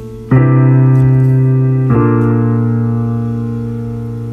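Music: sustained keyboard chords, with a new chord struck about a third of a second in and another near two seconds, each left to ring and slowly fade.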